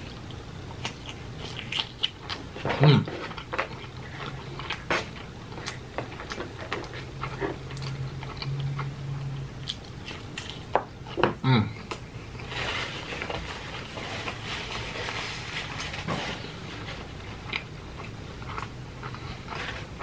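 A person chewing and biting pizza, with many small wet mouth clicks and smacks. Twice, about three seconds in and again about eleven seconds in, comes a short 'mm' of enjoyment, falling in pitch.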